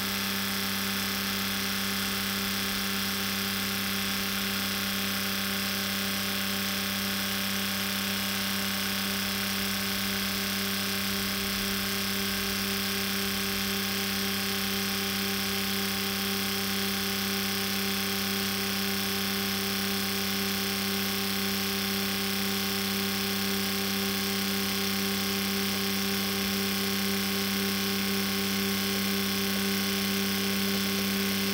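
Fuel injector flow rig running a set of four 690 cc injectors: a steady buzzing hum from the pulsing injectors and the rig's pump, over the even hiss of test fluid spraying into the measuring cylinders.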